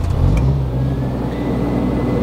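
Kohler 10 kW marine generator's four-cylinder engine firing up. It catches right at the start, its speed rises briefly, then it settles into a steady run, firing up readily.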